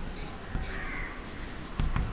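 Chalk scratching and tapping on a chalkboard as a word is written, with a few short sharp taps near the end.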